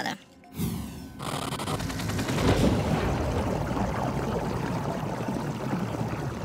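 Underwater sound design of churning water and rushing bubbles, a dense low rumble with rapid crackling, laid under dramatic music; it starts about half a second in.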